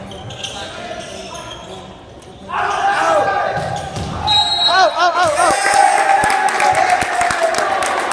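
Volleyball rally in an echoing gym: sharp thuds of the ball being struck. About two and a half seconds in, loud shouting and cheering voices break out.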